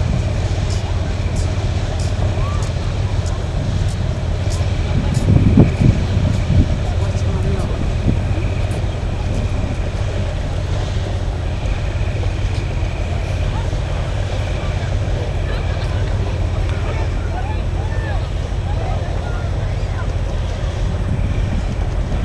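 Harbourside ambience: a steady low rumble with faint voices of people nearby, and a brief louder swell about five seconds in.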